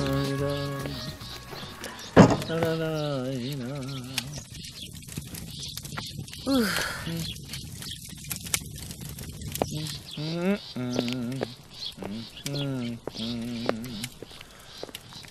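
Voices exclaiming and talking, some with a trembling, wavering pitch, over background film music, with a single sharp knock about two seconds in.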